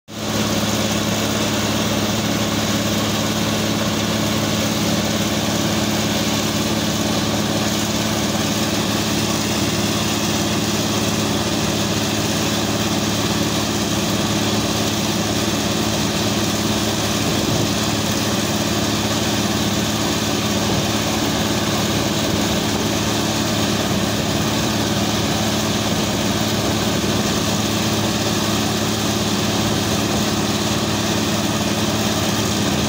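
Truck-mounted water well drilling rig running steadily while drilling: a constant engine drone under a rushing noise from water and cuttings spraying out at the borehole.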